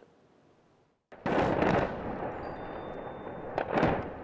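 A sudden explosion about a second in, its rumble trailing on for a couple of seconds, then two sharp bangs near the end: the sound of shelling and gunfire in war-zone footage.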